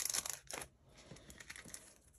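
Plastic craft-supply packets rustling and crinkling as they are handled and shifted on a table. The crinkling is loudest in the first half-second or so, followed by a few faint crinkles.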